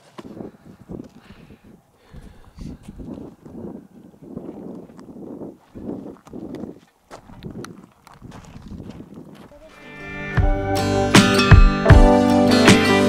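Footsteps crunching on gravel and dry desert dirt, a few steps a second. About ten seconds in, acoustic guitar music starts and takes over.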